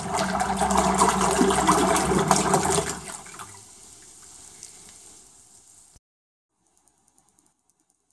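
Electric trolling motor running submerged in a tub of water, its propeller churning and splashing the water with a steady hum under it, then cut off about three seconds in. The sloshing dies away over the next few seconds, ending in near silence.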